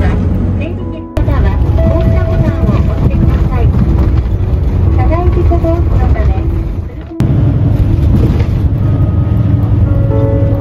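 Steady low rumble of engine and road noise heard from inside a moving vehicle. It breaks off and resumes abruptly twice, about a second in and about seven seconds in.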